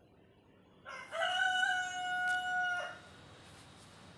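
A rooster crowing once: a short opening note, then a long call held at one pitch for almost two seconds, stopping sharply.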